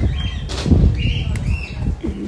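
Handling noise from a phone microphone rubbing and bumping against skin and clothing at very close range: an irregular rustling, scuffing noise.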